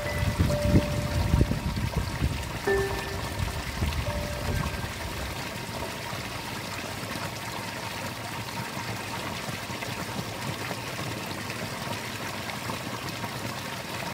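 Water pouring over a small drop from a rice-paddy irrigation channel into a ditch: a steady splashing rush. It is louder with low rumbles and a few short held tones in the first few seconds, then settles to an even flow.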